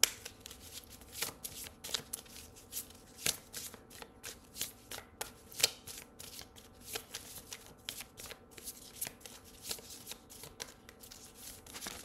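A deck of angel oracle cards being shuffled by hand: a run of irregular soft card slaps and flicks, a few a second.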